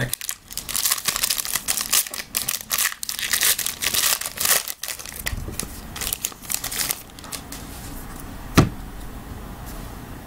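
A foil trading-card pack wrapper crinkling and tearing as it is ripped open and the cards are pulled out, for about seven seconds. Then quieter handling, with one sharp click near the end.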